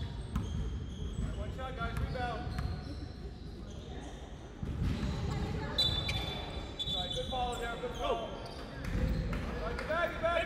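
A basketball bouncing on a wooden sports-hall floor during play, with scattered sharp thuds and players' shouts.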